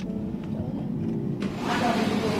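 Car running, heard from inside the cabin: a steady low engine and road hum. About one and a half seconds in it gives way suddenly to a louder, even hiss.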